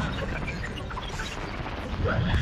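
Electrical crackling and sizzling over a low, steady rumble, with many small sharp crackles scattered through it.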